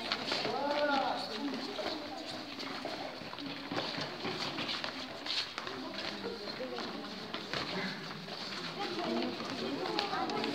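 Indistinct voices in a large sports hall, with a short rising-and-falling squeal about a second in and scattered light knocks from boxing gloves and footwork on the floor.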